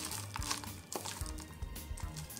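Potting soil trickling from a hand into a plastic plant pot: a light rustle with many small ticks of grains landing. Quiet background music plays with it.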